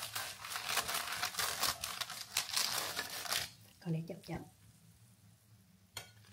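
A slotted metal spatula scraping under roasted potatoes on parchment paper over a baking tray, with the paper crinkling, for about the first three and a half seconds.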